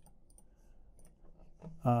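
A few faint computer mouse clicks, short and sharp, then a man's voice resumes near the end.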